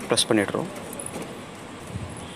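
A man speaking briefly, then a low steady background hiss with a few faint light metallic clicks.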